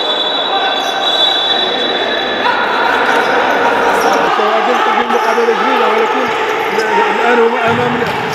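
Echoing noise of a futsal match in an indoor sports hall, with ball and court sounds, and a long high whistle through the first two and a half seconds. From about four seconds in, a man's voice calls out in drawn-out, wavering tones.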